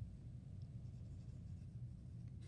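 A pen writing on workbook paper, faint strokes over a low steady hum.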